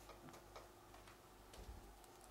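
Near silence, with a few faint light clicks of metal parts being handled as a larger faceplate disc is fitted onto a sharpening machine's spindle.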